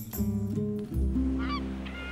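A short music cue of sustained synth chords, joined from about one and a half seconds in by a quick run of short honking bird calls.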